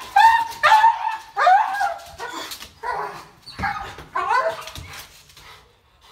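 A dog giving a rapid run of high-pitched yelping barks, about eight in a row, loudest at first and trailing off into quieter whines.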